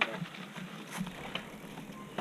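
Mountain bike rolling over a dirt trail: low tyre noise with scattered clicks and rattles from the bike.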